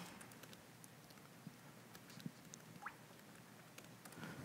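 Near silence with faint, scattered keystrokes on a laptop keyboard as a shell command is typed, and a brief faint rising squeak near the end.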